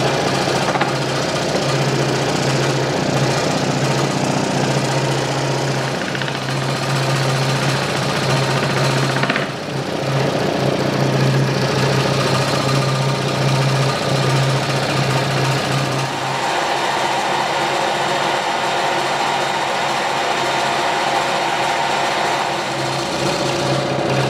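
Craftsman scroll saw running, its reciprocating blade cutting through a book hardened solid with epoxy resin (book micarta). A steady hum whose tone changes to a higher one about two-thirds of the way through.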